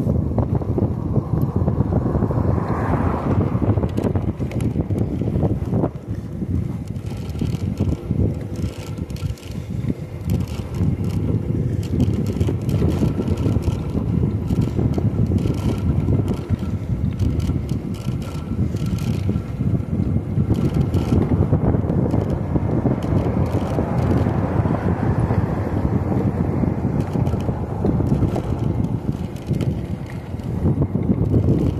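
Steady wind rushing over the microphone of a phone mounted on a moving electric bike, mixed with road noise from the ride.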